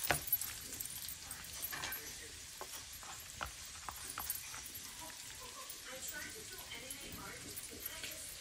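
A metal spoon scraping and tapping against a bowl as it scoops guacamole, with a few sharp clicks in the first half. Faint voices can be heard in the background later on.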